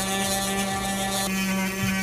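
Dremel rotary tool running at one steady pitch, grinding small pieces off a plastic tiny whoop drone frame.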